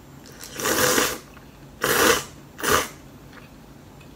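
Noodles being slurped, three loud slurps in quick succession, the last one shorter.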